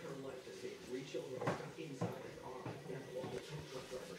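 Faint, indistinct voices talking in the background, with a couple of short sharp clicks about halfway through.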